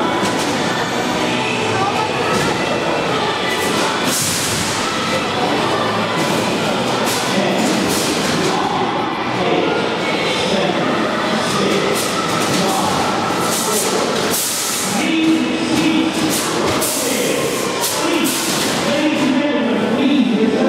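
Combat robots fighting in an arena: repeated sharp metal knocks and clatters as they hit each other and the arena floor, with a rumbling drive-motor din under loud crowd voices and music.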